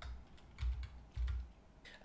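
Light clicks of a computer being worked at a desk, with two low thumps about half a second apart, picked up by the presenter's microphone as the presentation is advanced to its next slide.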